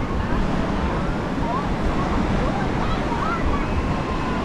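Steady surf breaking on a sandy beach, with wind buffeting the microphone as a low rumble. Faint distant voices of people call out over it now and then.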